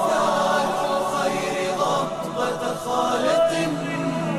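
Background music: an Arabic nasheed, a sung religious poem, carried by chanting voices in a gliding melody over a steady low held note.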